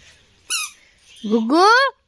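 A young child's voice: a brief high squeak about half a second in, then a loud, rising squeal near the end that breaks off suddenly.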